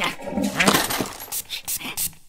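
Cartoon vampire character's wordless whimpering voice, rising and falling in pitch, followed by a few short clicks and taps near the end as the box is handled.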